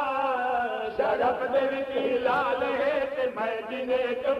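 A male zakir chanting a masaib lament in long held notes, the pitch wavering with small melodic turns, in the sung style of a Shia mourning recitation.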